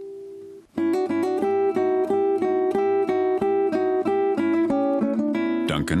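Classical nylon-string guitar playing a melody of single plucked notes, about four a second. It starts after a brief pause about a second in, once a previous note has faded out.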